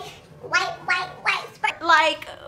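A woman's voice making a run of short wordless vocal sounds, a handful of quick bursts with sliding pitch.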